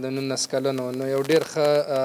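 A man's voice speaking, with a long drawn-out vowel for about the first second before the talk goes on.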